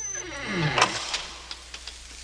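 Door hinge creaking open, a falling creak lasting under a second that ends in a sharp click.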